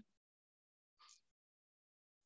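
Near silence, with one very faint short sound about a second in.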